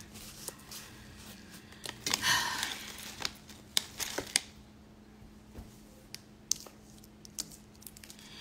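A deck of tarot cards being shuffled and handled: scattered sharp snaps and clicks of the cards, with a short rustle about two seconds in.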